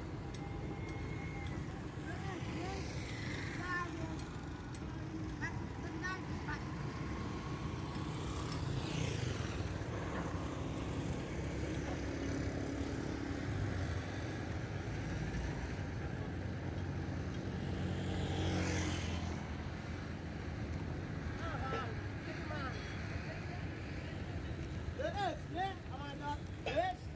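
Steady low engine rumble of road-construction machinery, among them a single-drum road roller working close by, with a passing vehicle swelling up about a third of the way in and again near two-thirds. Indistinct voices come through now and then.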